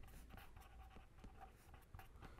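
Faint scratching of a pen writing on paper in a quick run of short strokes.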